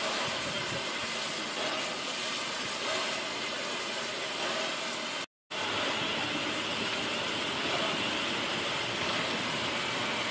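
LNER A4 Pacific steam locomotive standing at rest, steam hissing steadily from its front end. The sound cuts out for a moment about five seconds in.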